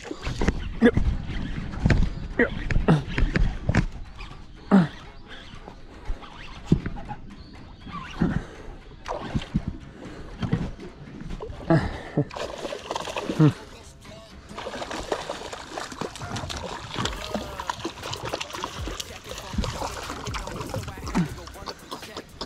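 A hooked fish splashing and thrashing at the water's surface beside a boat as it is reeled in on a baitcaster rod, with a run of sharp splashes.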